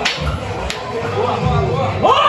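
Men's voices talking and calling out together in a crowded dressing room, with two sharp smacks less than a second apart near the start.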